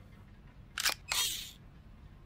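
A sharp mechanical click a little under a second in, then a short hissing clack lasting under half a second, like a camera-shutter sound effect.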